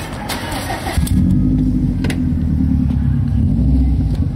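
A click as a car's fuel door is pushed shut. About a second later a car engine starts and runs with a steady low rumble.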